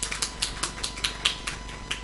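Typing on a computer keyboard: a quick, even run of keystrokes, about five a second.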